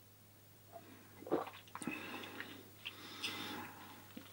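A man sipping and swallowing beer from a glass, then tasting it with soft wet mouth sounds and lip smacks; the sounds begin a little under a second in and are faint.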